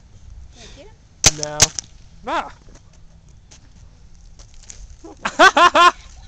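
Paintball gun firing sharp single pops, two in quick succession about a second and a half in, with more near the end among short bursts of voices.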